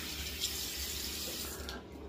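Bathroom sink tap running a steady stream into the basin, shut off near the end.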